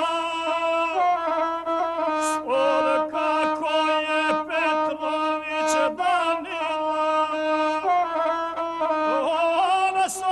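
Traditional Montenegrin epic singing accompanied by the gusle, a single-string bowed folk fiddle. A man sings in a wavering, ornamented style over the gusle's steady bowed line.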